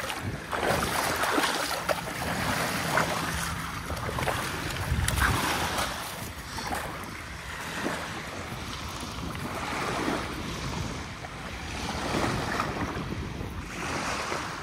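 Ocean surf washing onto the beach, with wind buffeting the microphone; the rush of noise swells and fades every few seconds.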